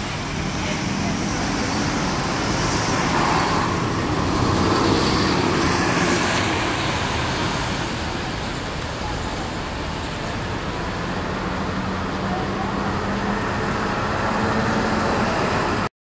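Busy street traffic with a city transit bus pulling away through it: a steady mix of engines and tyre noise that swells about three to six seconds in, then settles.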